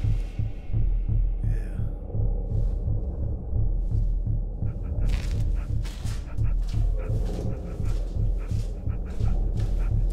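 Horror film underscore: a steady low, heartbeat-like pulse repeating several times a second, with scattered short clicks and rustles over it.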